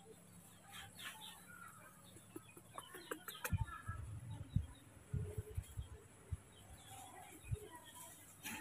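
Faint bird clucking and short chirps in the background, with a run of soft low bumps in the second half as the milk bottle is handled.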